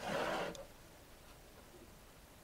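A brief rustle of handling at the start, lasting about half a second, then quiet room tone.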